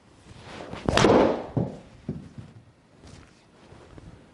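Golf shot with a stiff-flex hybrid in an indoor simulator: a rising swish of the swing, then a sharp strike of clubface on ball about a second in as the ball is driven into the impact screen. Two softer knocks follow.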